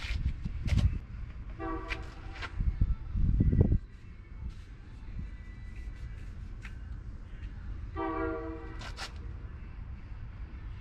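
A horn sounds twice, a steady blast of about a second each, the two some six seconds apart. A low rumble stops abruptly about four seconds in, and there are scattered short clicks.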